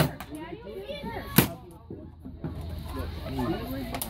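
Two shots from a paintball marker, sharp pops about a second and a half apart, with voices talking over them.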